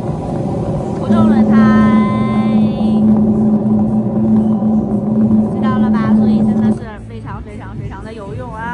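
Demonstration loudspeaker playing simulated tyre noise for an ordinary tyre without a noise-absorbing sponge. About a second in, a loud steady low hum, the air-cavity resonance inside the tyre, joins the running noise, and both cut off suddenly near seven seconds.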